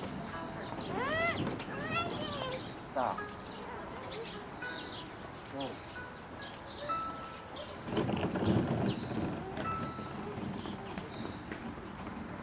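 A few short, high chirping calls with a rise-and-fall in pitch in the first three seconds, then a person coughing several times about eight seconds in.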